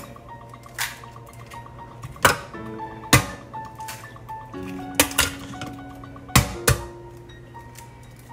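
Eggs being cracked: a series of sharp, short taps of eggshell against a hard edge, some in quick pairs, over steady background music.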